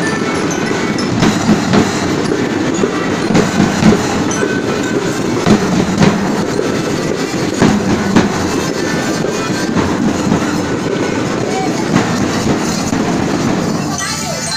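Children's school marching drum band playing on the march: snare drums and bass drums beating loudly throughout.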